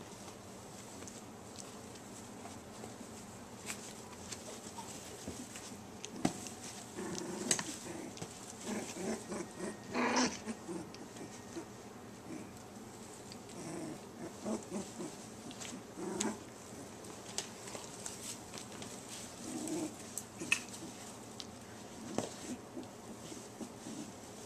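A litter of border collie puppies making small vocal noises in short scattered runs, the loudest a brief high squeal about ten seconds in, with faint rustling clicks of bedding between.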